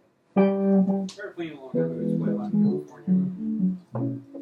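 A guitar note rings out about a third of a second in, followed by a short run of single plucked notes at changing pitches, played loosely rather than as a song.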